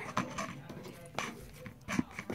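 Clear slime being pushed back into a clear plastic tub: soft wet handling sounds with a few sharp clicks and taps of the plastic, the clearest just over a second in and near the end.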